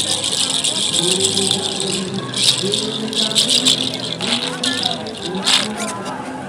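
Seed-shell rattle made from yellow oleander seeds, shaken in irregular bursts: a dry, dense clatter of many small hard shells knocking together, louder in several surges.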